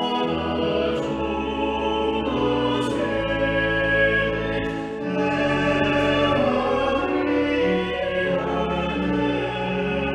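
A small choir sings a hymn verse, with sustained low organ notes beneath.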